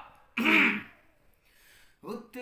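A man's single short vocal sound, about half a second long, a third of a second in.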